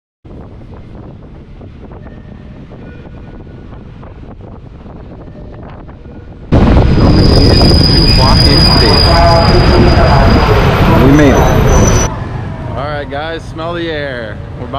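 Steady running noise of a train heard through an open carriage window. About six and a half seconds in it jumps to much louder rail noise with a steady high squeal as a diesel railcar on the next track comes alongside, then stops abruptly about twelve seconds in.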